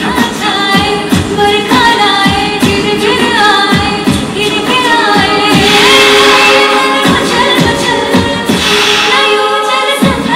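Women singing into handheld microphones over music with a steady beat.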